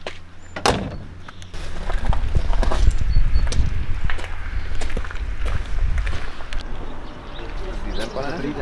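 A vintage car's door shuts with one sharp thump under a second in, followed by a few light clicks. From about two seconds in, a loud, uneven low rumble covers the rest.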